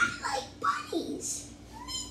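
Children's high-pitched vocal play noises: several short squeaky calls that slide up and down in pitch.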